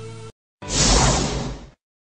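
A song cuts off abruptly, then a loud whoosh transition effect swells up and fades away over about a second, followed by silence.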